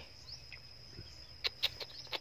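Quiet background with a steady, thin, high-pitched insect call, then a quick run of short sharp clicks starting about one and a half seconds in.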